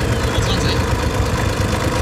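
Bukh 403 tractor's two-cylinder engine idling with a steady, low, pulsing rumble.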